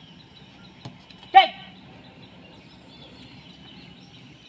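A single short, loud shouted call from a person, a little over a second in. Behind it a low steady outdoor background with faint bird chirps.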